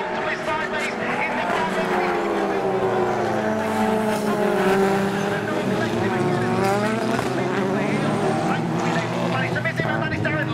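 Several touring race cars' engines running past at once, their pitches rising and falling and overlapping as the pack comes through.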